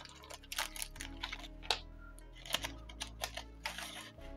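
A small plastic zip-lock bag being handled: crinkling with irregular light clicks and crackles as it is turned and opened.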